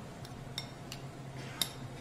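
Metal spoon clinking against a glass mixing bowl while diced ingredients are stirred: a few light clinks, the sharpest about a second and a half in.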